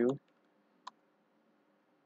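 A man's voice finishing a word, then a single sharp click of a computer keyboard key a little under a second in.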